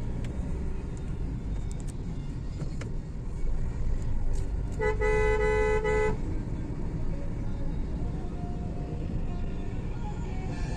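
Steady road and engine rumble heard from inside a moving car's cabin. About five seconds in, a car horn sounds one steady two-tone blast lasting just over a second.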